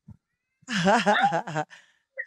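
A person laughing: a single burst of about a second, starting about half a second in, with a wavering pitch breaking into several quick pulses.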